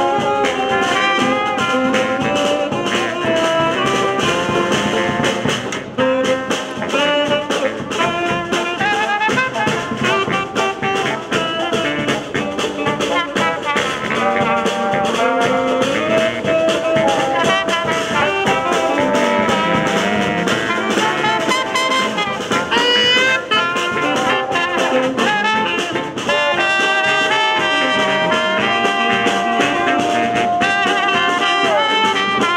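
A small New Orleans-style street jazz band playing an improvisation. Trumpet, trombone and saxophones carry the melody over banjo, bass drum and snare drum.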